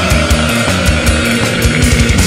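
Melodic death metal band playing: distorted electric guitars and drums, with fast, choppy low hits.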